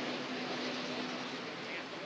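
Steady outdoor background hum of distant traffic with a constant low tone running through it.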